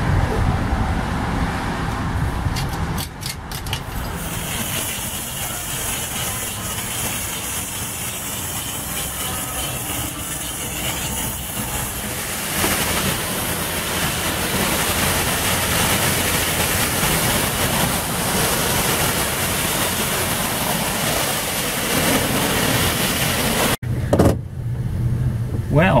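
A few coin clicks at a coin-op car wash pay station, then a self-serve pressure washer wand spraying water onto a motorhome with a loud steady hiss that brightens about halfway through. Near the end it cuts to a vehicle engine idling.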